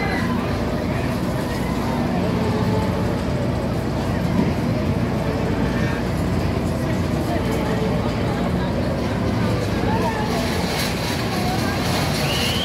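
Fairground ambience: a steady low machine hum from the rides runs under the scattered chatter and calls of a crowd.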